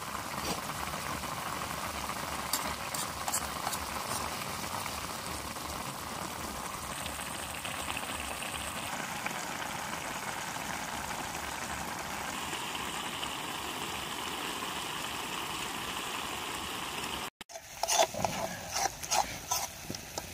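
Noodles in broth simmering in a blackened wok over a wood fire: a steady bubbling hiss. Near the end, after a brief dropout, a metal spoon clicks and scrapes against the wok as the noodles are stirred.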